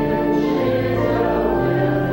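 A congregation singing a hymn with organ accompaniment, with long held notes.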